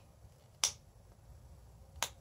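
Knife tip working at the lined top of a small plastic flip-top fragrance-oil bottle: one sharp click about two-thirds of a second in and another just as it ends.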